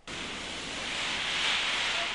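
Road-tunnel deluge fire-suppression system spraying water from nozzles in the tunnel roof: a steady rushing hiss that builds over the first second and a half. The sound marks the tunnel's emergency response to a fire.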